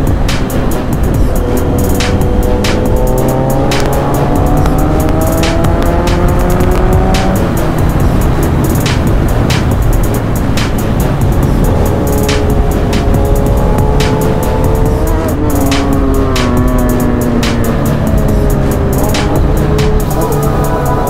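Motorcycle engine accelerating hard, its pitch climbing steadily for about six seconds, then climbing again past the middle and dropping off as the throttle closes. A hip-hop beat with regular drum hits plays over it.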